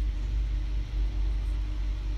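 A steady low hum with a faint higher steady tone over it, the recording's constant background noise heard in a pause between words.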